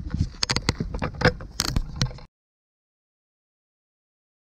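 Close, irregular knocks and scuffs, several sharp ones among them, over a low rumble; the sound cuts off to dead silence a little after two seconds in.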